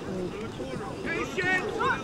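High-pitched shouting voices of youth players and sideline spectators at a lacrosse game: several short yelled calls, none clearly worded.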